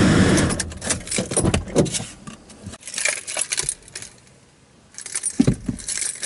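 Close handling noise inside a car: rustling with many sharp clicks and small metallic jangles as objects are moved about, easing off briefly about four seconds in before picking up again.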